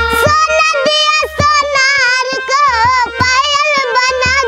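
A young girl singing a Hindi song with vibrato, over harmonium accompaniment and a steady percussion beat.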